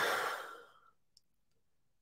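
A man's breathy sigh trailing off the end of a spoken word, fading out within the first second.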